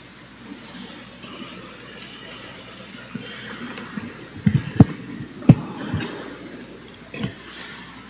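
Microphone handling noise at a church lectern: faint steady room hiss, then from about four and a half seconds in a handful of short knocks and rustles, the loudest near five seconds, as the reader handles his papers and the gooseneck microphone.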